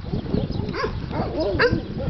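A dog giving short, high whining yelps in two brief groups, about half a second in and again about a second and a half in.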